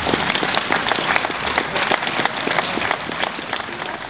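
Audience applauding, with individual hand claps standing out.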